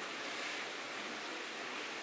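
A steady, even hiss of background noise, with no distinct sounds in it.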